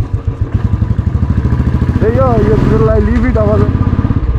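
Motorcycle engine running at low speed with an even pulsing beat, picked up close from the rider's seat. A voice is heard over it from about halfway through.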